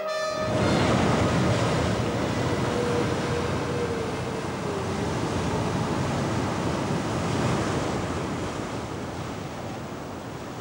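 Ocean surf breaking on rocks: a steady, loud rushing wash of waves, strongest about a second in and easing slightly toward the end.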